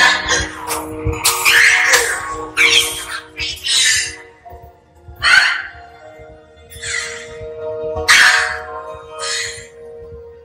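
A woman gasping for breath in a series of short, ragged gasps, about one a second at first and spreading out later, with indistinct voices. A steady sustained music tone plays underneath.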